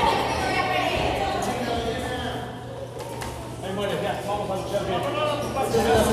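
Voices of people shouting and talking in an echoing hall, over a faint steady low hum.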